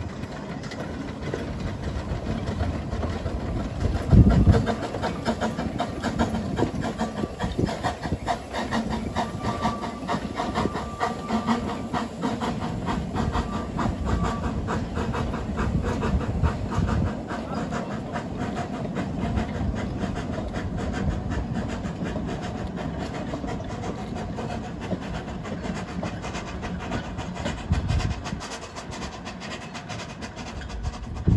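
A 2 ft narrow-gauge steam locomotive hauling carriages past at low speed, with steam noise and the rapid, regular clicking of the train running along the track. There is one loud thump about four seconds in.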